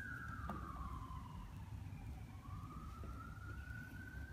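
Emergency vehicle siren wailing, a single tone that falls slowly over the first two seconds and then rises slowly again, over a low background rumble.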